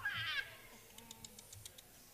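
A short, high, wavering vocal cry, like a meow, then a quick run of about seven light ticks.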